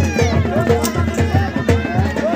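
Traditional folk band music: a high, nasal reed pipe wavers and bends in pitch over steady low drumbeats, about four or five a second.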